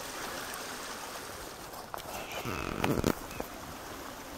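Footsteps of rubber boots wading through shallow bog water among grass tussocks, sloshing steadily, with a few sharper splashes and knocks about two to three seconds in.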